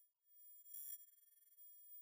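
Near silence, with faint steady high-pitched electronic tones and a brief faint blip a little under a second in.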